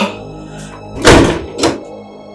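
Background music with two dull thuds: a heavy one about a second in and a lighter one about half a second later.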